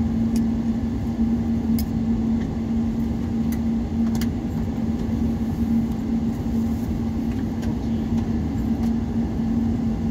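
Steady airliner cabin noise while taxiing at idle: jet engines and cabin air making an even rushing sound with a steady low hum, and a few faint clicks in the first half.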